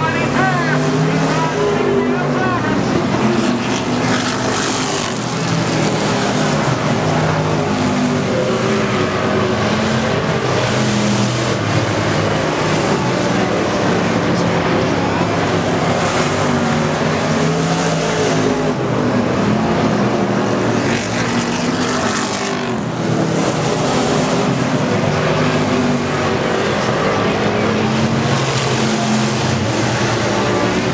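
Several dirt-track race cars running laps together, their engines droning steadily, rising and falling a little as the field goes around.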